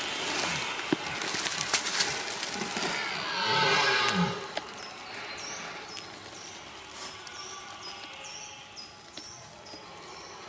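Red deer stag roaring in the rut: one drawn-out bellow that rises and falls in pitch about three and a half seconds in, after a few sharp cracks. From about five seconds in, a faint high chirp repeats about twice a second.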